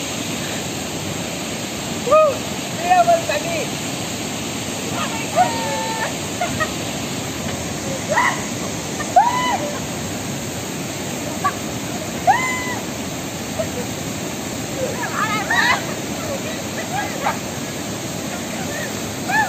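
Steady rush of a shallow rocky stream below a waterfall, with short shouts and whoops every few seconds and some splashing as water is thrown by hand.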